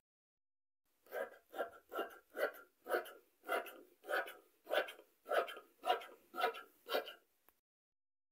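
Large fabric scissors cutting through red tulle, a steady run of about a dozen snips, roughly two a second, that stops shortly before the end.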